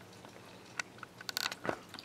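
Faint, scattered clicks and crackles, a few bunched together past the middle, over quiet room tone.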